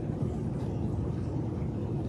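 Steady low background rumble, even throughout, with no distinct clicks or tearing sounds.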